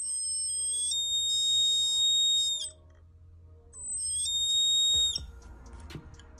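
Piezo buzzer of a BC547 LDR darkness-sensor circuit sounding a loud, high, steady tone twice, first for about two and a half seconds and then, after a short pause, for about a second and a half. Each sounding means the light-dependent resistor has been covered and the darkness has switched the transistor on.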